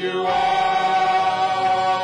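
A gospel praise team singing, holding one long sustained note together.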